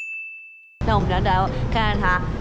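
A single high, bell-like ding sound effect that starts abruptly and fades away over about a second, then a woman starts talking.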